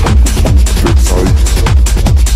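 Techno track from a DJ mix: a steady kick drum, each stroke dropping in pitch, under busy hi-hats and synths.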